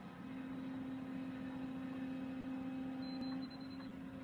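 Volvo excavator's diesel engine running at a steady pitch, a low hum, with a faint high whine near the end.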